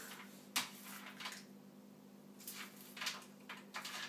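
Faint clicks and rustles of hands working at a kitchen counter, with one sharper click just over half a second in and a cluster of soft ones in the second half, over a steady low hum.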